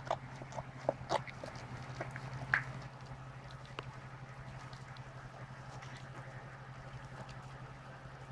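Standard poodle mother licking and chewing at her newborn puppy's umbilical cord: scattered short licking and smacking clicks, busiest in the first three seconds, with a brief squeak about two and a half seconds in, all over a steady low hum.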